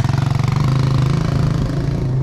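Small motorcycle passing close by with its engine running, an even rapid pulsing note that eases slightly near the end.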